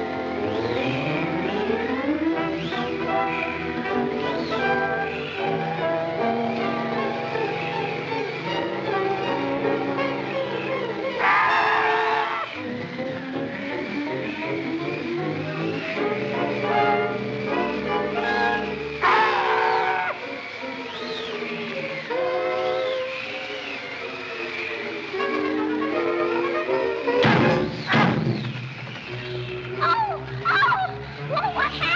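Orchestral cartoon score playing continuously, with three short noisy bursts cutting through it about a third of the way in, about two-thirds in, and near the end.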